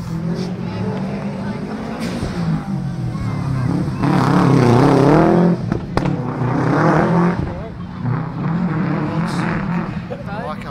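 Rally car engine, a Subaru Impreza, revving hard through gear changes as it drives along the stage. It is loudest about four seconds in, with a sharp crack near six seconds and a further burst of revs before it eases off.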